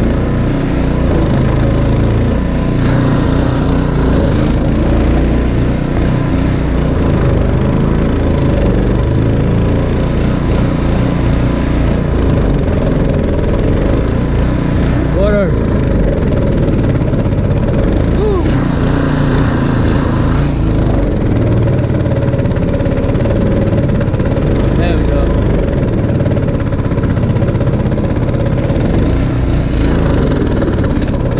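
Small air-cooled gasoline engine on a jon boat's stern running steadily under way, with wind and water rush over it.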